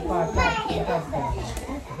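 Speech: a man talking, with a second, higher-pitched voice overlapping.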